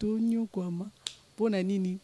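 A woman talking close to a microphone, her voice held on long steady syllables, with one sharp click about a second in.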